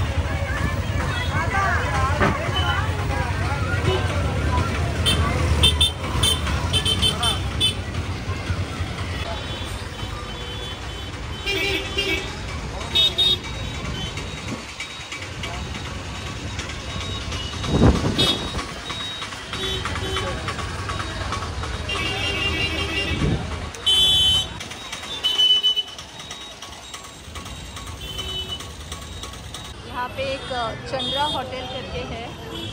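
Busy street ambience: chatter of passers-by over vehicle traffic, with short horn toots sounding several times.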